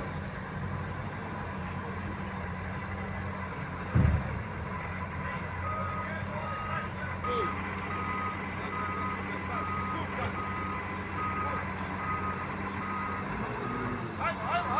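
Wheel loader's diesel engine running steadily, with its reversing alarm beeping at an even pace, a little over once a second, from about six seconds in. A loud thump comes about four seconds in.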